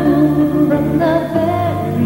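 A slow pop love-song ballad: sung vocal with held, wavering notes over soft, steady instrumental accompaniment.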